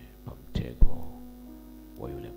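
Steady electrical mains hum from the sound system, broken by a couple of short thumps on the microphone, the loudest a little under a second in. A soft held keyboard note comes in near the end.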